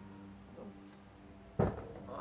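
One sharp knock about one and a half seconds in: a horse's hoof striking the trailer's loading ramp as the horse steps up onto it.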